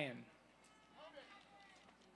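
The end of a spoken name fades out in the first moment, then near-quiet outdoor background with a faint, distant voice about a second in.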